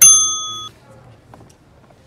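A single loud, bright bell-like ding that strikes suddenly and cuts off abruptly after well under a second.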